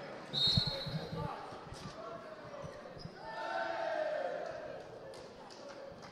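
A handball bouncing several times on the hardwood court, just after a short high whistle as play restarts from the centre. Voices in the hall rise and fade a couple of seconds later.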